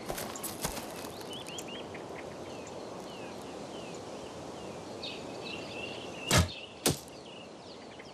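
Birds chirping over outdoor ambience, then near the end two sharp sounds about half a second apart: an arrow loosed from a bow and striking the target.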